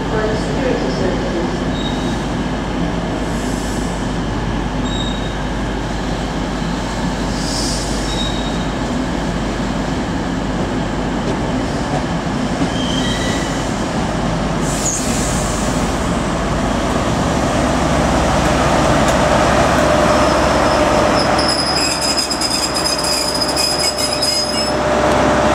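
An InterCity 125 high-speed train with Class 43 diesel power cars pulls slowly into a station, its wheels and brakes squealing over a continuous rumble. The sound grows louder as the rear power car draws level, with a held high-pitched brake squeal as it comes to a stand near the end.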